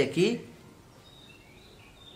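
Faint room hiss with a few small, high bird chirps in the background.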